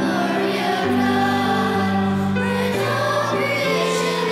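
Church choir singing a hymn over sustained instrumental accompaniment, the opening hymn before the start of Mass. Held chords change about once a second.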